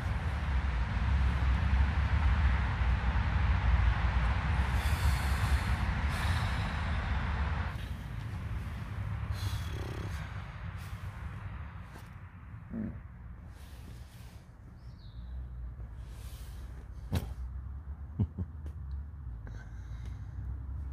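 Steady roar of distant motorway traffic, dropping suddenly about eight seconds in to a quieter low rumble, with a few faint clicks near the end.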